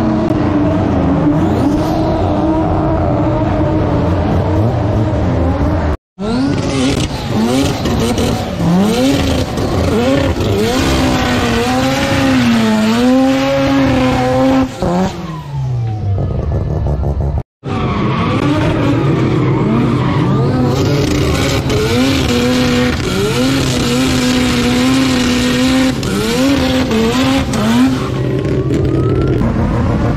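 Rotary-engined race cars revving hard through burnouts, the engine note wobbling up and down as the throttle is worked, with tyre squeal. The sound cuts out briefly about six seconds in and again about seventeen seconds in.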